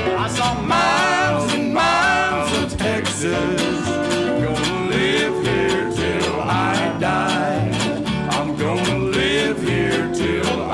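A live western swing band playing: archtop electric guitars strumming over a walking upright bass, with a man singing the melody.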